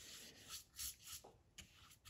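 Near silence, with a few faint soft rubbing sounds in the first second and a half.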